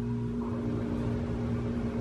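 A steady low hum, with faint handling noise from a camera lens being held and turned in the hands.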